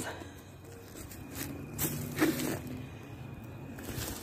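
Handling noise from a phone camera brushing against clothing: soft rustling, with a few brief scuffs in the middle.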